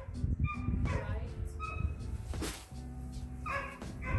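A dog barking in short, repeated yips, several times over the few seconds.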